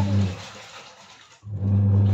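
A steady low hum that fades away about half a second in and cuts back in suddenly after about a second and a half, with only faint room sound in the gap.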